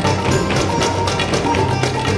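Live ensemble music with a fast, steady percussion beat and sustained melody notes over it.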